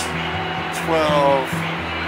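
A man's voice briefly saying the time, "12:35", over acoustic guitar music, with a steady low hum underneath.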